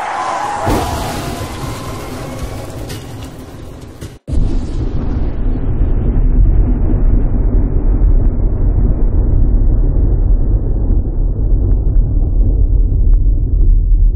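Edited-in outro sound effects: a whoosh with a falling tone, then, from about four seconds in, a loud, steady, deep rumble that carries on to the end.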